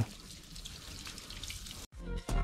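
Water from a garden-hose spray nozzle hitting a motorcycle's spoked front wheel and tyre during the rinse, a steady hiss of spray that cuts off suddenly near the end.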